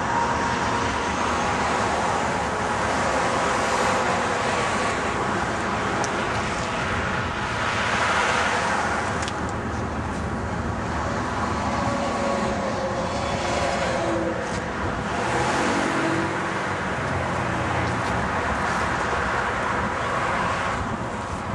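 Steady road traffic noise, with passing vehicles swelling and fading every few seconds.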